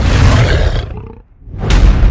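Two loud, deep, noisy blasts of a sound effect: the first swells in at the start and fades out after about a second, the second hits suddenly near the end.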